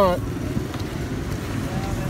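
Steady low rumble of a car's engine and road noise heard from inside the moving cabin.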